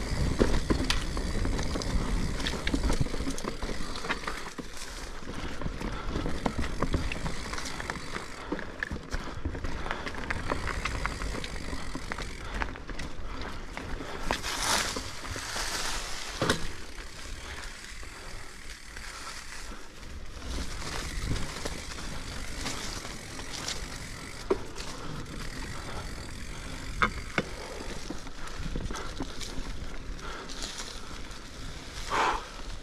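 Mountain bike rolling down a dirt trail strewn with dry leaves: a steady tyre rumble over the ground with rattles and clicks from the bike, a brief rush of noise about halfway through and a few sharp knocks near the end.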